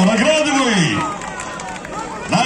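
A man talking for about the first second, then a quieter stretch of background crowd noise.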